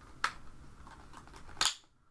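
Two sharp plastic clicks from a Nerf Rival Edge Jupiter blaster being handled: a light one just after the start and a louder one near the end.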